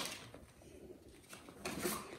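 A short tap right at the start, then faint light taps and rustles of cardboard toilet-paper tubes and paper plates being handled and set onto stacked towers.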